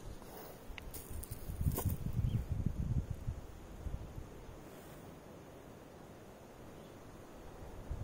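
Leaves and twigs of a guava bush rustling as a guava is plucked, with a sharp snap about two seconds in and low rumbling on the microphone; it settles to a faint outdoor hush after about four seconds.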